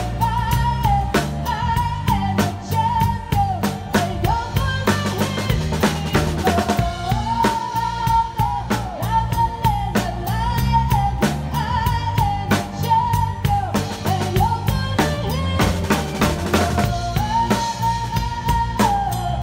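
Drum kit played steadily with sticks along to a recorded song, drum and cymbal hits over the track's bass and a melody line that rises and falls.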